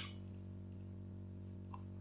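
A few faint computer mouse clicks, short and spread out, over a steady low electrical hum.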